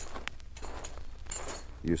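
A quiet gap with faint background hiss and a few soft, scattered clicks. A man's voice begins right at the end.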